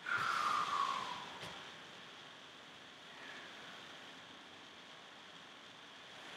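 A short, thin squeak falling in pitch, about a second long, right as the wall sit begins. It is followed by a faint tap and then quiet room tone.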